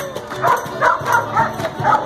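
Music playing, with a dog barking about five times over it in quick succession.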